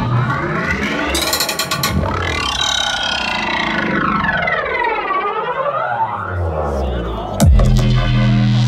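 Electronic bass music played live over a festival sound system in a breakdown. Sweeping synth tones glide up and down while the deep bass drops out, then a hit near the end brings the bass and beat back in.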